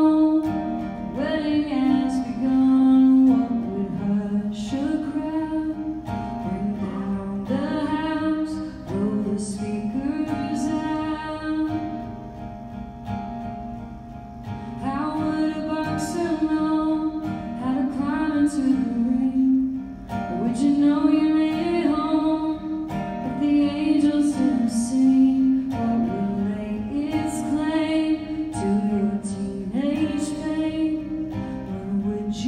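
A woman singing a song live, with acoustic guitar accompaniment.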